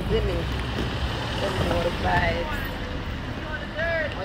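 Parking-lot ambience: a steady low rumble with faint voices speaking underneath.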